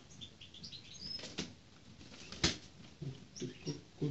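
Eurasian sparrowhawk flapping its wings in short flurries as it balances on the hand and glove, with a few short high chirps in the first second and a half. A single sharp click about two and a half seconds in is the loudest sound.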